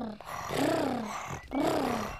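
Cartoon children's voices purring in imitation of tigers: a rolling 'purr' sound that rises and falls in pitch, repeated about once a second.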